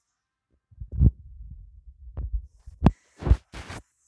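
Handling noise from a phone being moved about: low rumbling and rubbing against the microphone, with several knocks, the loudest about one second and three seconds in.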